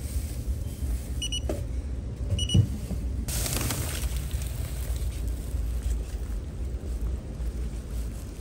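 Two short electronic beeps about a second apart from the checkout's card payment terminal, then a plastic shopping bag rustling as it is picked up, over a low steady hum.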